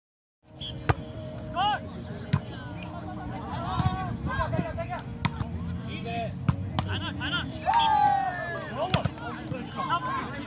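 Volleyball rally on grass: the ball is slapped by hands and forearms about six times, sharp single smacks a second or more apart, among the calls and shouts of players and spectators, with one long loud shout about eight seconds in.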